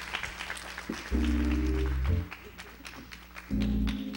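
Congregation clapping in a church hall, a steady patter of many hand claps, while an instrument plays two short held low chords, one about a second in and one near the end.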